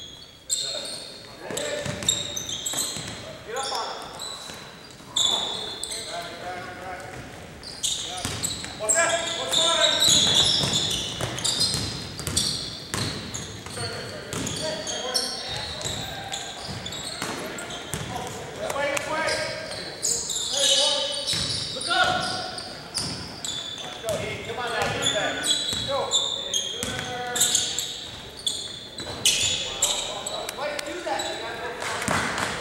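Basketball game in a gym: a basketball bouncing on the hardwood court, with players and spectators calling out throughout.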